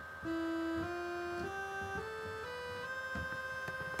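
Sawtooth wave from a Max/MSP phasor~ oscillator, played from a MIDI keyboard as six notes stepping up a scale. Each note is a steady synthetic tone with a full stack of overtones.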